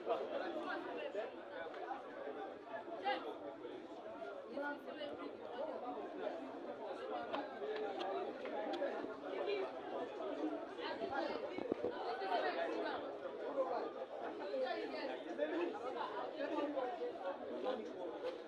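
Continuous overlapping chatter of many voices, the players and onlookers around a football pitch talking and calling out at once.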